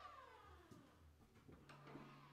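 Faint creak of a door swinging on its hinges: one long squeak that falls steadily in pitch, with a couple of light clicks.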